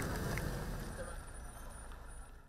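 Faint outdoor background noise with a steady low rumble, growing gradually quieter.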